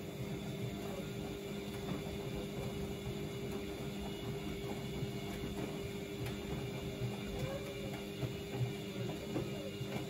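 Bosch WFO2467GB front-loading washing machine in its main wash, its drum tumbling the load through soapy water: a steady motor hum with irregular sloshing and soft thumps of the laundry, a few louder thumps near the end.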